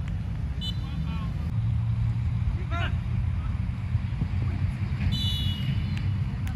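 Open-air football match: a few distant shouts and calls from players on the pitch over a steady low rumble.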